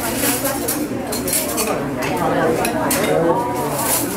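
Busy restaurant dining room: dishes and cutlery clinking under overlapping conversation.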